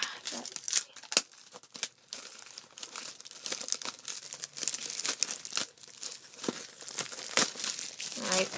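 Plastic shrink wrap crinkling and tearing as it is pulled off a Blu-ray case by hand, in irregular crackles.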